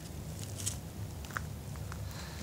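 A few faint footsteps on gravelly ground over a low steady outdoor rumble.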